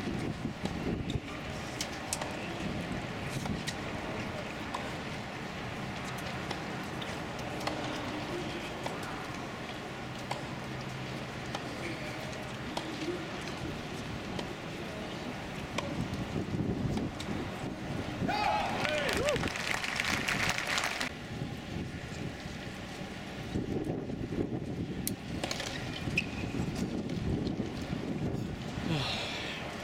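Spectators' voices chattering in the stands of a tennis stadium, with faint sharp ticks of the ball being struck on court. About two-thirds through, a voice rises and a short, louder burst of crowd noise follows.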